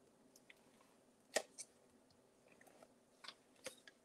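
Faint handling of paper and card: a few small, sharp clicks and rustles, the clearest about a second and a half in, with near silence between them.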